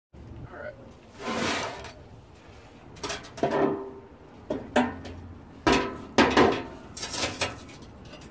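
Metal clanks, knocks and clinks from a steel propane forge shell being handled on a metal workbench: a string of separate sharp hits, several with a short ring.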